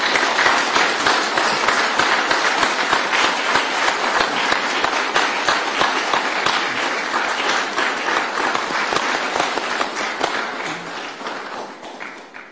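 A small seated audience applauding with steady, dense hand-clapping that dies away near the end.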